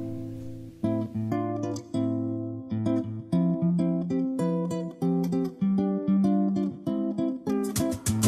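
A song's intro on strummed and plucked acoustic guitar, chords changing every half second or so; a fuller backing comes in near the end.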